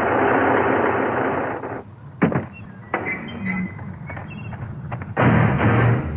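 Commercial soundtrack: a loud rushing noise for about two seconds, a sharp bang, a stretch of quieter sound effects, then loud rock music with electric guitar cutting in about five seconds in.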